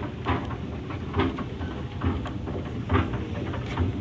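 Escalator running with a low steady rumble, with a soft thump about once a second as someone walks on its steps.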